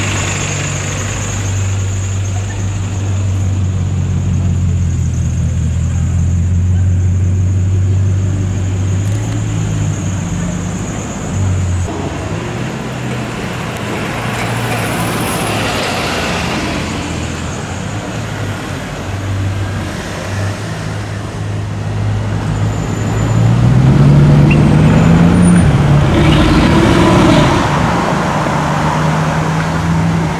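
Bugatti Chiron Sport's quad-turbo W16 engine running steadily at low revs while the car rolls slowly. About three-quarters of the way through it rises in pitch and gets loudest as the car accelerates away.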